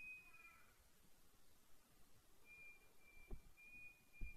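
Near silence, with a faint cat's meow at the very start and a soft thump about three seconds in.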